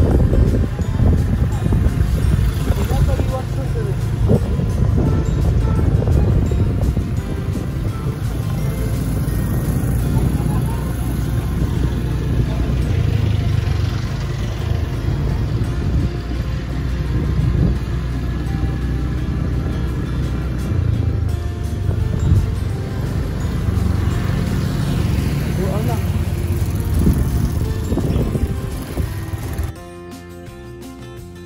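Background music playing over the steady low rumble of a moving vehicle.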